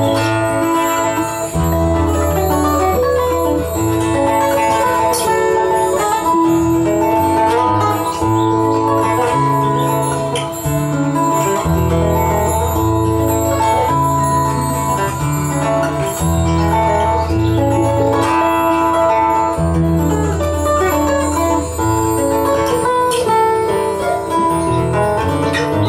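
A live band playing an instrumental Brazilian jazz tune, with guitar to the fore over electric bass and drums.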